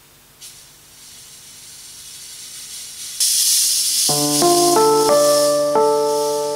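A stage fog machine hissing, growing louder over the first three seconds and then loud and steady. About four seconds in, an electronic keyboard comes in with a run of held chords that change every half second or so.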